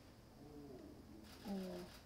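A man's voice, low and brief: faint murmuring, then a short hummed 'mm' about one and a half seconds in.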